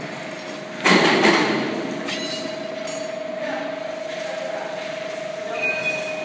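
CNC guillotine shear running: a loud burst of clatter about a second in, then a steady, even hum from the machine.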